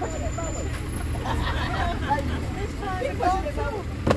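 Several people chattering indistinctly inside a passenger van, over a steady low hum from the idling van.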